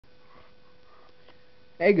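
Low room tone with a faint steady hum and a few soft, faint noises, then a man's voice says "hey" near the end.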